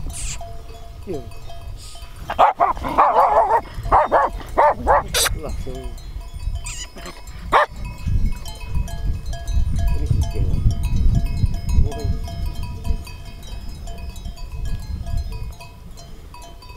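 Shepherd dogs barking, a quick run of barks between about two and five seconds in and one more bark a couple of seconds later. Wind rumbles on the microphone.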